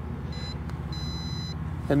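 Two high electronic beeps from the MJX Bugs MG-1 drone's remote controller as its motor-unlock button is pressed, a short one and then a longer one, over a steady low hum; the drone does not unlock on this press.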